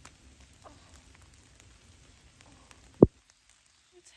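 Light rain pattering on forest leaves, with scattered drops ticking. About three seconds in comes a single loud thump, and then the sound cuts out to dead silence.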